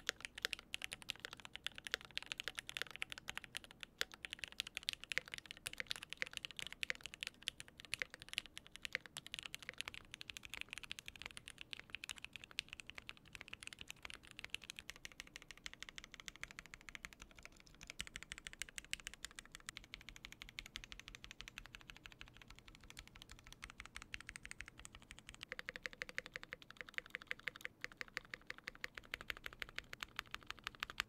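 Continuous typing on a ZZanest Elements75XT mechanical keyboard with Gateron Oil King linear switches in an aluminium plate: a fast, steady run of keystroke clacks. In the last few seconds the board is fitted with Everglide Aqua King linear switches on a polycarbonate plate with O-rings, and the typing gives a softer, lower sound.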